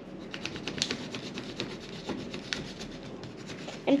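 Paper being folded and creased by hand into a paper fortune teller: a steady run of small, irregular scratching and crinkling ticks.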